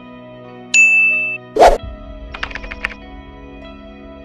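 Logo-animation sound effects over soft background music: a bright ding whose tone hangs for about half a second, then a short loud hit, then a quick run of tinkling clicks.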